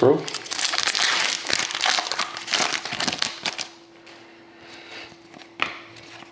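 Foil wrapper of a hockey card pack being torn open and crinkled, loud and crackly for the first three and a half seconds. After that come softer scattered clicks of the cards being handled.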